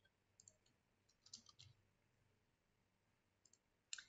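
Near silence with a few faint computer mouse clicks: a small cluster in the middle and a sharper click near the end.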